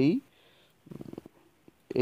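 A man's voice says one short word, then pauses, with a faint, brief low murmur about a second in.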